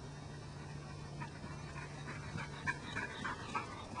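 A border collie panting close by, in short repeated breaths from about a second in. A low steady hum runs under the first three seconds.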